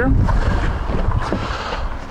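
Wind rumbling on the microphone, with a faint latch click about a second in as the rear door of a 2007 Toyota Corolla is pulled open.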